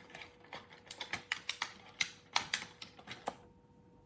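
Quick, irregular clicks and taps of a small hard-plastic mini security camera being handled against its plastic packaging tray, the clatter busiest in the middle of the stretch.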